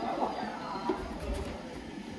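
Faint background music with wavering pitched notes, and a low rumble around the middle.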